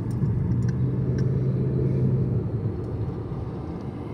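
Steady low road and engine rumble heard from inside a moving car, with a low steady drone for a couple of seconds in the middle.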